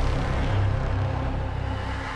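Ominous background music: a low, steady drone.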